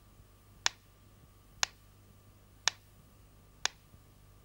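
Pyramid-cased clockwork pendulum metronome ticking steadily, about one tick a second.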